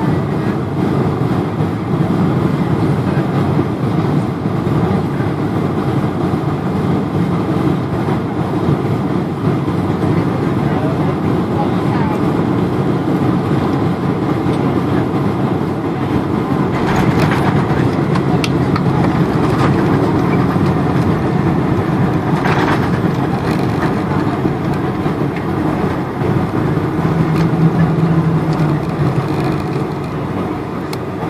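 Cabin noise inside a Boeing 747-400 landing: a steady rush of airflow and engines on final approach, a thump at touchdown a little past halfway, a second thump several seconds later, then rumbling on the runway roll with a low hum near the end.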